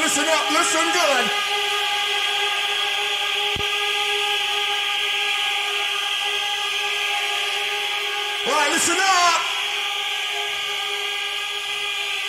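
A held electronic chord with no beat, sustained evenly from a live rave DJ set recording. A man's voice calls out briefly at the start and again about nine seconds in.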